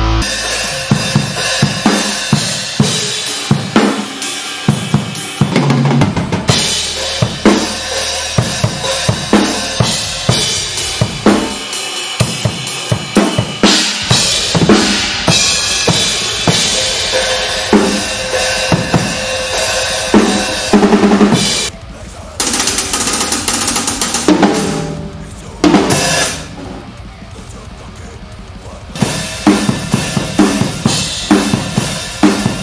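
Acoustic drum kit played hard in a fast death-metal pattern: rapid, steady bass-drum strokes under snare hits and crashing cymbals. The playing drops back to a quieter passage twice in the second half.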